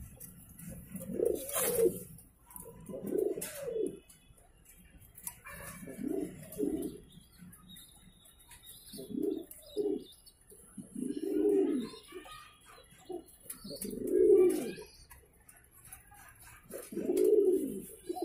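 Magpie Pouter pigeons cooing: low coos repeated about seven times, each under a second long, every two to three seconds.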